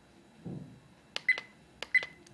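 Buttons on a CAR DVR F60 dash cam pressed twice while paging through its settings menu: each press gives a click followed by a short, high key beep. The first comes a little over a second in and the second near the end.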